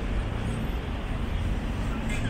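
City road traffic: a steady low rumble of passing cars, with no single event standing out.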